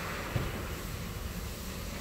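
Steady background noise with no distinct source, and one faint knock about a third of a second in.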